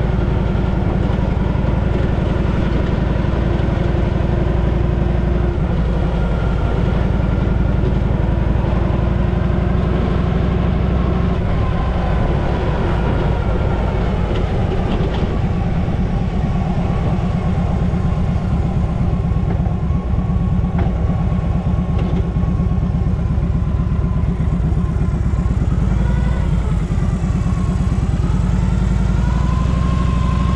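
Harley-Davidson Panhead V-twin engine running steadily under way on a freshly adjusted carburettor. The engine speed dips and picks up again near the end.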